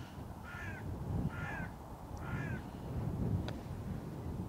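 A bird calls three times, each call short and about a second apart, over a low rumble. About three and a half seconds in, a putter taps a golf ball with a single sharp click.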